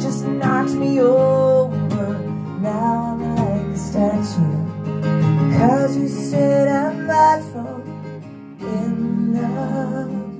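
Live acoustic duo performing a song: a strummed steel-string acoustic guitar and a keyboard accompany singing. The music dips briefly about eight and a half seconds in, then picks up again.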